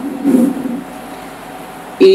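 A pause between phrases of a man's chanted Quran recitation, leaving faint steady hiss and room noise with one brief low sound about a third of a second in.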